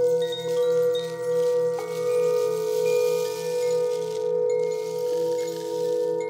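Brass Tibetan singing bowls ringing: a bowl is struck with a wooden striker about two seconds in and its tone rings on over a sustained, gently wavering drone. A few short, high chime-like notes sound above it.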